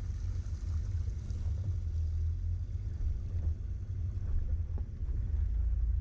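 Off-road vehicle crawling up a rocky dirt trail: a steady low rumble from the engine and drivetrain, with faint scattered ticks of tyres rolling over loose rock.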